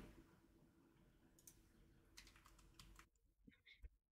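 Faint, scattered clicks of a computer keyboard and mouse against near silence, about six of them spread over the last few seconds.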